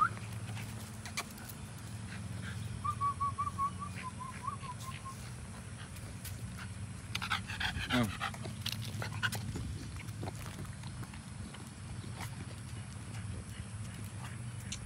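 American bully dog panting, with a short run of high whimpers about three seconds in.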